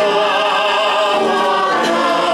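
Hymn sung by several voices, led by a man singing into the pulpit microphone, with long held notes and a light vibrato. The notes change to a new phrase near the end.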